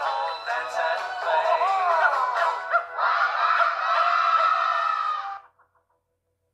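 Music with singing: a sung line whose pitch bends up and down, then a long held final chord from about three seconds in that stops abruptly about five and a half seconds in.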